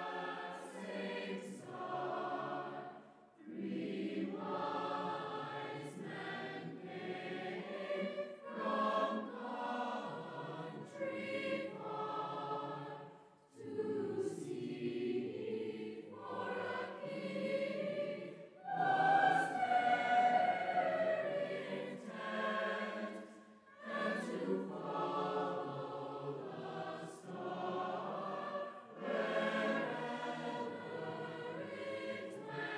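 Choir singing, with a brief break every few seconds between phrases.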